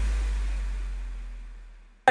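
Tail of an electronic logo-intro music sting: a deep bass rumble with a thin hiss above it, fading away steadily to silence.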